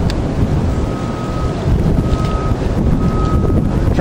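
Wind buffeting the camera microphone, a loud, uneven low rumble. A faint high beep sounds three times, about a second apart.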